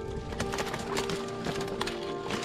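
Background music playing steadily under irregular crackling and snapping of twigs and brush, as a fat bike is pushed through dense scrub.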